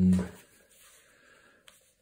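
A man's speaking voice trailing off about half a second in, then near silence with a faint hiss and a single soft click shortly before the end.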